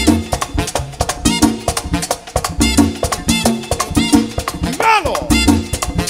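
Live merengue típico band playing instrumentally in a pambiche groove: accordion over a steady, driving percussion beat and repeating bass notes.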